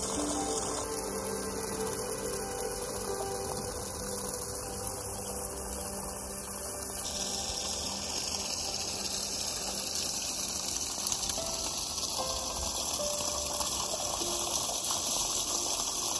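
Water gushing steadily from a homemade PVC pump's outlet pipe and splashing onto wet ground, with a faint steady hum; the sound changes abruptly about a second in and again about seven seconds in.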